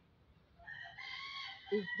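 A rooster crowing once, one long call of about a second and a half that starts about half a second in, with speech beginning over its end.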